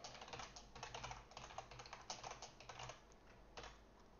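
Faint typing on a computer keyboard: a quick, uneven run of key clicks that stops shortly before the end.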